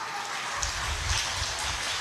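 Audience applauding, an even patter of many hands clapping that fills out about half a second in.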